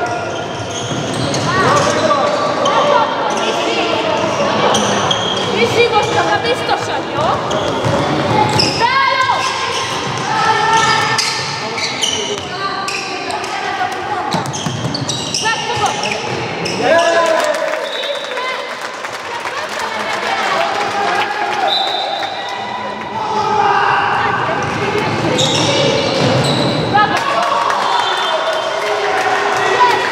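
Handball bouncing on a wooden gym floor during play, amid shouting voices of players and onlookers, with the echo of a large sports hall.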